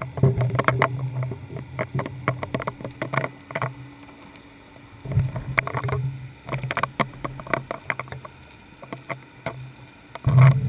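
Muffled underwater recording through a GoPro's sealed housing on a deep-drop rig: irregular sharp clicks and knocks, with a low steady hum that comes in at the start and again about five seconds in.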